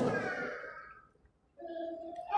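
A man's speaking voice trails off into the room's echo, followed by a moment of near silence. About one and a half seconds in comes a short, faint, steady hum, like a hesitation sound before he speaks again.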